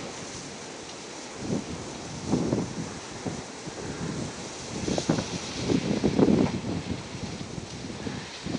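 Wind buffeting the microphone in several gusts, over the quiet whoosh of two small 1 kW Windmax wind turbines spinning fast in a strong breeze.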